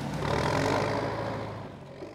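A heavy machine's engine running steadily with a low hum, fading away near the end.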